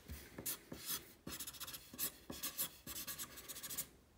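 Felt-tip marker writing a signature on a sheet of paper: a quick run of short, scratchy pen strokes.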